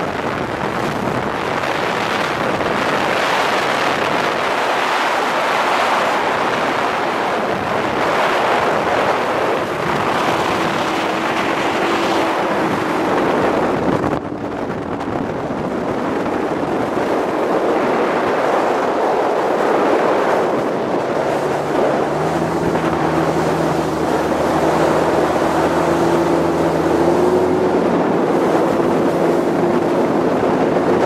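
Bass boat running at speed: wind buffets the microphone and water rushes along the hull. The outboard motor's steady drone comes through faintly at times and more plainly in the last third.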